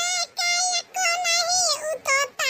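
A high, pitch-shifted cartoon voice singing a song in held, wavering notes, broken by short gaps between phrases.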